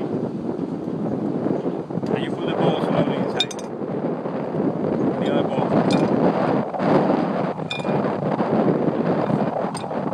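Wind buffeting the microphone, with a few short metallic clinks from the steel Speedy moisture tester being handled.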